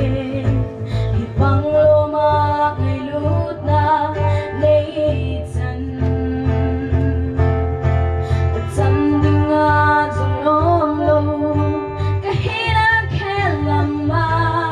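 A girl singing a slow song solo, with held, wavering notes, over guitar and a steady bass line.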